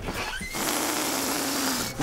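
A steady hiss-like rushing noise that starts about half a second in and cuts off suddenly near the end.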